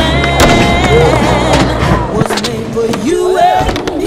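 Skateboard tricks on concrete, with several sharp clacks of the board popping and landing and wheels rolling, heard under a loud folk-style music track.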